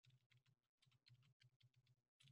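Near silence, with very faint computer keyboard typing.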